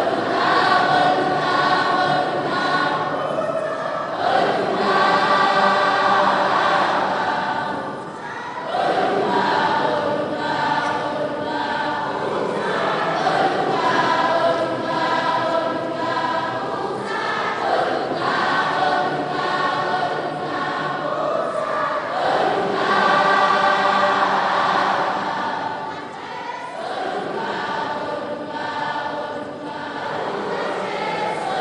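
A large congregation of children and young people singing a hymn together in chorus, in long phrases with brief breaths between them, about eight seconds in and again near the end.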